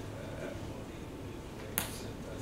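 Low steady room hum with one sharp, brief click near the end.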